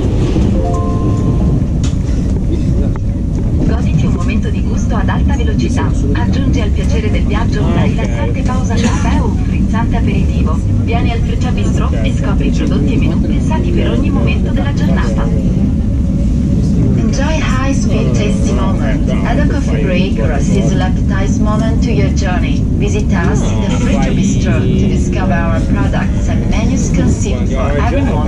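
Steady low rumble of an ETR 460 Frecciabianca tilting train running at speed, heard inside the passenger carriage. Indistinct passengers' voices carry on over it.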